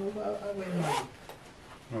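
Zipper on a fabric bag being pulled open, one short bright rasp just before the one-second mark and some fainter rubbing of the bag after it, while a person talks briefly at the start.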